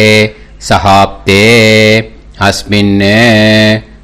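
A man chanting a Sanskrit sankalpam mantra in long, drawn-out syllables. Two of the syllables are held notes with a slight rise and fall in pitch.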